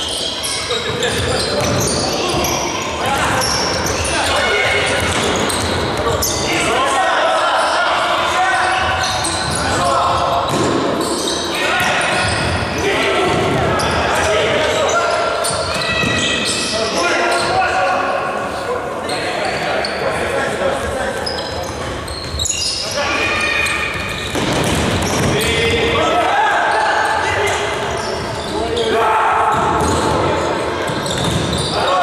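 Futsal being played in a large, echoing sports hall: players' voices shouting and calling throughout, with the ball being kicked and bouncing on the wooden floor.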